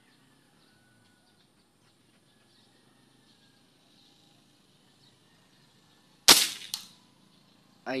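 A single shot from a CO2 air rifle converted to PCP, a sharp crack about six seconds in, followed by a fainter tick.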